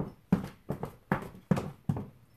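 7-inch high heels striking a hardwood floor in a quick run of sharp knocks, about three steps a second, which stop near the end.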